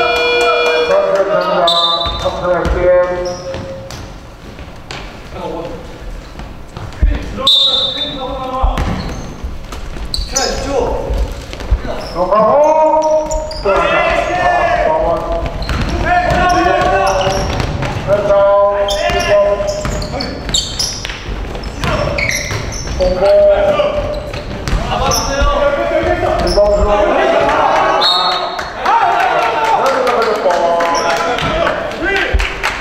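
A basketball bouncing and being dribbled on a hardwood court during play, with players' voices calling out over it.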